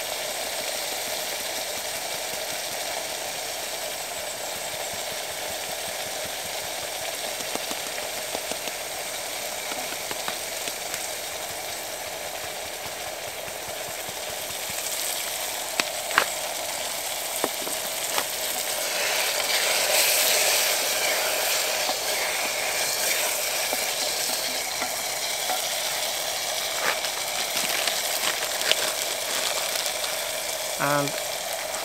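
Diced tomato and vegetables sizzling in oil in a mess kit pot over a Trangia spirit burner, just after curry powder and pepper have gone in. The sizzle is steady and grows a little louder past the middle, with a few light clicks.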